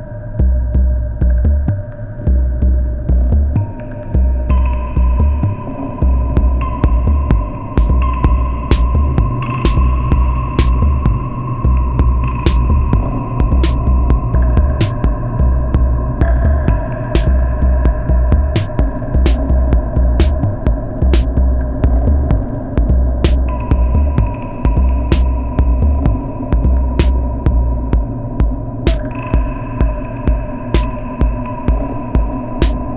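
Modular synthesizer jam of electronic music: a deep, steady pulsing bass pattern under sustained droning tones that change pitch every few seconds. Sharp, hi-hat-like clicks join about eight seconds in.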